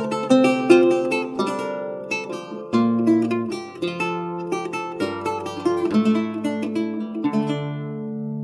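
Renaissance lute played solo with the fingers: a plucked melody over ringing bass notes and chords. Near the end a chord is struck and left to ring.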